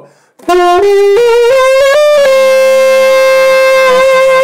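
Alto saxophone playing a quick run of rising notes, then one long held note that starts clean and turns husky and rough as the growl comes in, made by voicing into the horn while blowing.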